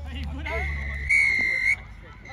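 Referee's whistle: one long blast that starts about half a second in, gets much louder about a second in, and cuts off suddenly near the end.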